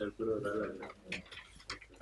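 Quiet, off-microphone speech for a moment, then a few light ticks that fit footsteps on a hard floor.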